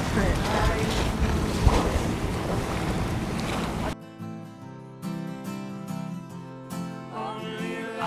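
Wind on the microphone and sea noise aboard a sailing yacht under way. About halfway through it cuts off suddenly, and quiet background music follows.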